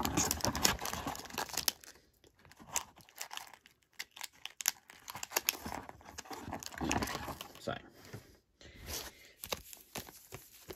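Foil-wrapped Pokémon booster packs crinkling as they are pulled out of a cardboard booster box and shuffled together by hand, in bursts with a quieter spell about two to four seconds in.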